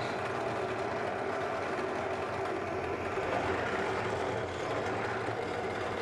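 Benchtop drill press motor running steadily, a constant mechanical whir.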